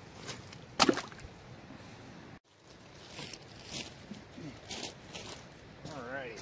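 Gold-panning gear being handled on a creekside gravel bar: a single sharp knock about a second in, then scattered light scrapes and crunches of gravel.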